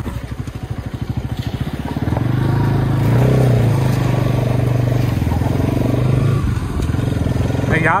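Bajaj Pulsar NS200's single-cylinder engine heard from the saddle while riding, pulsing at low revs at first, then louder and steady from about two seconds in as the rider opens the throttle and holds it.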